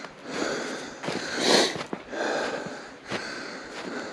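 A man breathing hard and noisily close to the microphone while climbing on foot, about four breaths a second or so apart, the one about a second and a half in the loudest.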